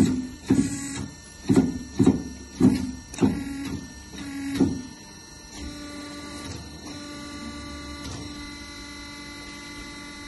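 400V Ravaglioli tractor tyre changer's electric hydraulic power unit jogged in about seven short bursts, each starting with a clunk, in the first five seconds as the clamp arms are moved. After that the motor runs with a steady hum.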